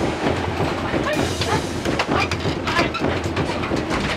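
Rapid, irregular clattering and knocking on a bamboo film set as a fight stunt is performed, as feet and bodies hit the bamboo floorboards and furniture, with a few brief shouts.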